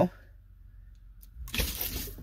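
Well pump pressure switch contacts snapping closed about one and a half seconds in as the manual-start lever is lifted, then a steady rushing hiss as the well pump starts and water flows into the system to pressurize it.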